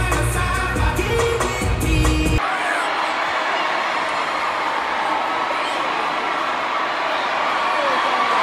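Concert music with heavy bass and a beat plays over an arena sound system and cuts off abruptly about two and a half seconds in. After that, a large crowd is heard screaming and cheering.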